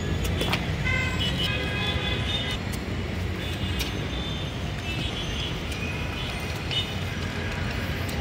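Road traffic rumbling steadily, with several short horn toots. A few sharp clicks sound over it.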